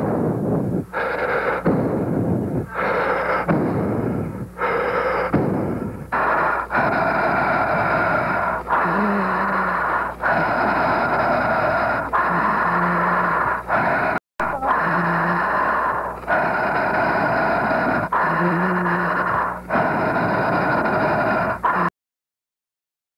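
Loud, heavy breathing into the microphone: quick breaths at first, then longer drawn breaths with short pauses, and now and then a brief low hum in the voice. The sound cuts out for an instant about fourteen seconds in.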